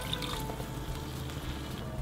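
Water pouring steadily from a jug into a pan of chunky tomato and vegetable sauce.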